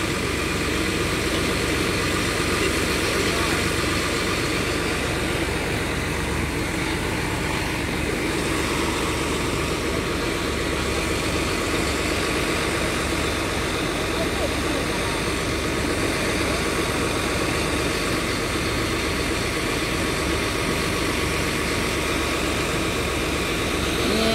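Charter coach's diesel engine idling steadily.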